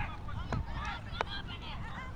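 Background voices of spectators and players: high, short calls and chatter over a low outdoor rumble, with two sharp knocks, about half a second and just over a second in.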